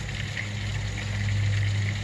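Electric pool-cover pump running with a steady low hum while it pumps rainwater out from under the tarp, over a wash of running water.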